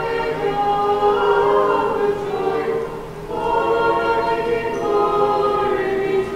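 Small church choir singing Russian Orthodox vespers chant a cappella, in sustained chords with a short break for breath about halfway through.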